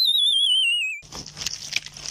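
Cartoon 'dizzy' sound effect: a high whistle that wobbles as it slides down in pitch for about a second, matching stars circling a stunned character's head. It is followed by faint crackling clicks over a low hum.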